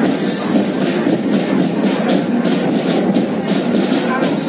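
Marching band playing, heard at a distance: a dense, steady wash of band sound with frequent drum and cymbal hits cutting through.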